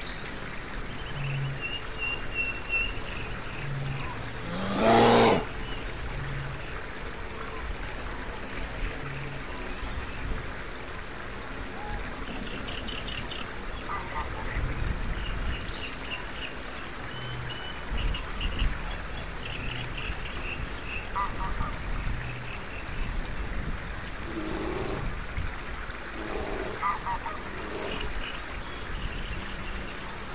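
Layered forest ambience for a fantasy game: low croaking pulses repeat about every second and a half over a steady bed of background noise, with scattered short high chirps. About five seconds in comes one loud sound that sweeps sharply upward over about a second.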